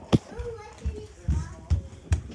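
A child's voice making wordless sounds, with a sharp knock just after the start and several dull thumps from the handheld camera being moved and bumped.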